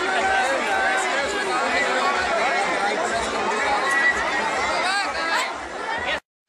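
A large crowd of people all talking at once, a steady babble of many overlapping voices with no single speaker standing out.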